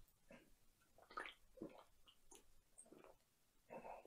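Faint gulps and swallows of a person drinking from a can: a handful of short, soft sounds spread over a few seconds, with a slightly longer one near the end.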